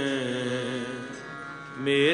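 Sikh shabad kirtan, a male voice over harmonium: a sung note slides down and fades, the held instrument tones carry on quietly, and then voice and harmonium come back in loudly just before the end.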